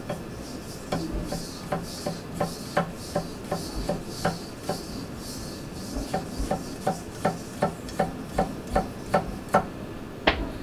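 Japanese gyuto chef's knife rough-chopping garlic on a wooden cutting board: a steady run of knocks as the blade meets the board, about three a second, with a short pause around the middle.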